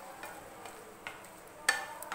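Wooden spatula stirring thick potato curry in a nonstick frying pan over a faint simmering sizzle, with a small click about a second in and one sharp knock of the spatula against the pan near the end.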